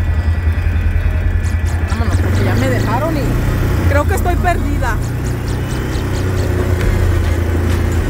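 ATV engine running as the quad rolls slowly over a gravel dirt road, a steady low rumble throughout, with a voice heard briefly in the middle.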